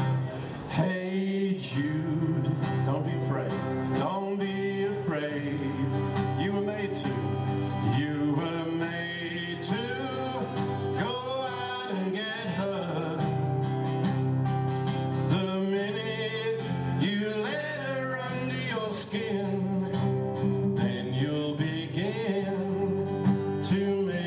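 Live acoustic song: two acoustic guitars strummed steadily under sung vocals, with more than one voice singing.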